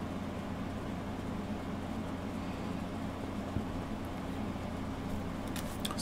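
Steady low electrical hum of room tone, with no other sound standing out.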